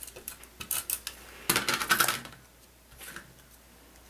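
Tape runner being drawn across paper hearts: a run of light clicks, then a short scratchy rasp about a second and a half in, with faint paper handling after.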